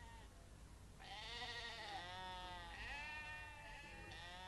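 Sheep bleating faintly, about three wavering bleats in a row, starting about a second in.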